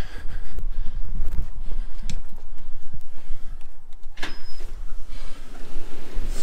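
Wind and handling rumble on a body-worn camera microphone, with footsteps and a few clicks. About four seconds in, a click is followed by a short high beep from the key-card reader at a glass entrance door.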